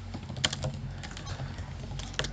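Typing on a computer keyboard: a quick run of key clicks, the sharpest about half a second in.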